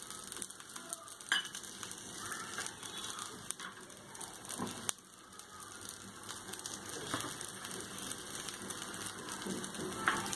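Masala omelette frying on a flat griddle (tawa) in oil just poured round its edges: a steady, fairly faint sizzle and crackle. A couple of light knocks stand out, one early and one just before the middle.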